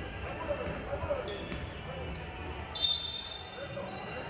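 Indoor basketball game sounds in a large hall: a ball bouncing, sneakers squeaking on the hardwood court, and voices calling out. The loudest moment is a short high squeak about three seconds in.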